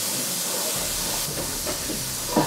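Steady hiss of stovetop cooking: steam off a pot of boiling pasta water and food sizzling in a pan. A low rumble comes in just under a second in.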